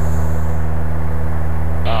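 Steady drone of a light aircraft's engine and propeller heard inside the cockpit: a constant low hum with an even hiss above it.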